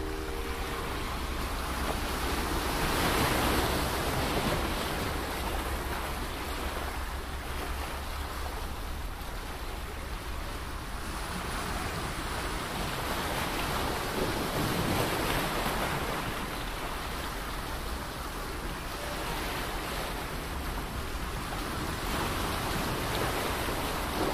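Surf breaking and washing up a sandy beach, with wind rumbling on the microphone; the wash swells about three seconds in and again around fifteen seconds.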